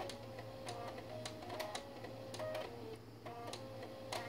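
Musical floppy drives, their head stepper motors buzzing out a melody one note at a time in short held pitches, with clicks between notes over a steady low hum.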